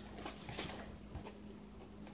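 Faint rustles and a few light knocks of a cardboard tripod box being handled and lowered.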